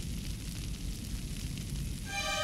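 Steady, low rumbling noise with a grainy crackle throughout, without pitch or clear single impacts.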